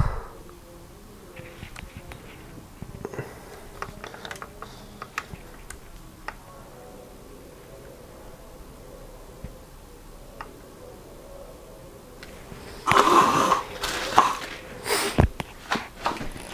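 A smartphone being handled and turned over in the hands: faint small clicks and taps over quiet room tone, then a few seconds of louder noisy rustling and a sharp thump near the end.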